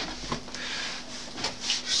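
Rubbing and rustling of a person moving about and sitting down at a desk close to the microphone, with a low bump near the start.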